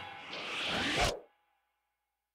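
The last chord of a live rock band (electric guitars, bass, drums) dies away, then a short scraping swish swells up. It cuts off abruptly into silence a little over a second in.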